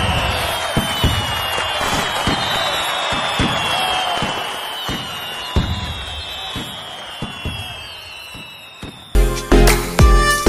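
Fireworks: a crackling hiss with irregular bangs and a few long, slowly falling whistles, dying down over several seconds. About nine seconds in, music with a heavy beat starts.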